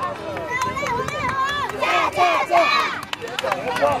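Young children's voices shouting and chattering over one another, with a loud burst of several voices together about two seconds in.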